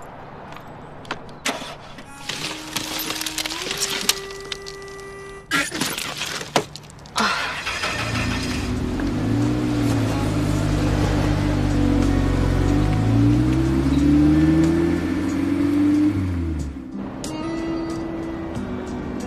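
Volkswagen New Beetle being started: a few clicks and a steady whine, then about seven seconds in the engine starts and runs, its pitch rising and falling, before it falls away near the end as music comes in.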